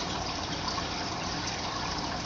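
Aquarium filter water running and trickling, a steady even noise.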